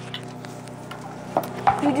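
Handling noise from a handheld phone: light rubbing and a few sharp clicks over a steady low hum. A man starts speaking at the very end.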